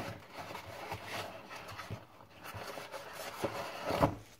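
Faint kitchen handling sounds: a few soft knocks spread through, and a brief rustle about two seconds in, over quiet room tone.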